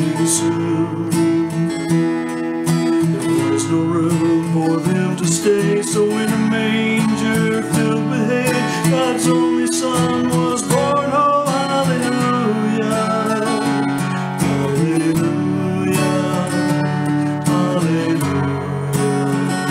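Acoustic guitar strummed in a steady rhythm, with a man singing over it for much of the time.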